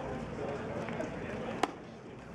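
Ballpark background of crowd chatter and distant voices, with a single sharp crack about three-quarters of the way through.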